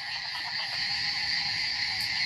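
Chorus of many frogs calling at once, a steady unbroken drone with no single call standing out.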